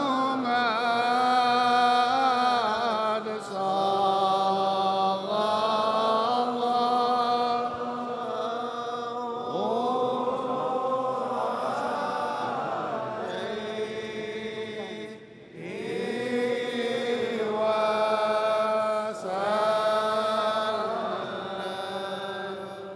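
Devotional Arabic chanting of salutations on the Prophet (salawat), sung in long melodic phrases with held, ornamented notes and brief pauses between phrases.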